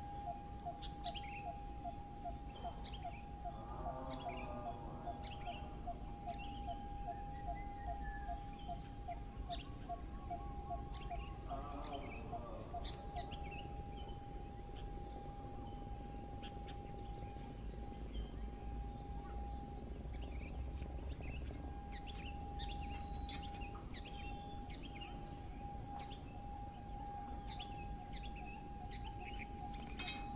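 Birds chirping, with many short, high calls scattered throughout. Beneath them run a steady high-pitched tone and a low rumble, with a fast pulsing under the tone that stops about halfway through.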